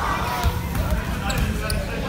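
A basketball bouncing on a hardwood gym floor, the clearest bounce about half a second in, amid voices in the gym. Two short high squeaks follow near the end.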